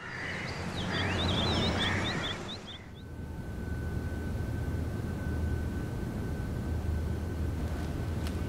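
Birds chirping over a city's background noise for about three seconds. Then a quieter indoor room tone with a low hum and a steady high-pitched tone.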